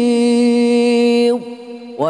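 A male reciter chanting the Quran in melodic tartil style, holding one long, steady note. The note ends with a falling slide about a second and a half in, and after a brief pause the next phrase starts.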